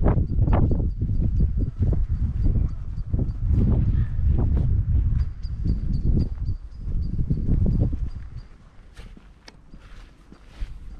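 Footsteps of people walking on an artificial-turf pitch, under a heavy low rumble from wind on the microphone. Both drop much quieter about eight seconds in.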